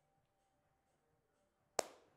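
A single sharp hand clap near the end, over quiet room tone.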